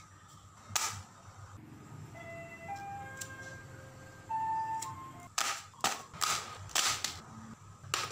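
Added intro sound effects: a single sharp click, then a sparse run of short electronic beeps at changing pitches, then about four loud, sharp bursts in quick succession that sound like gunshots.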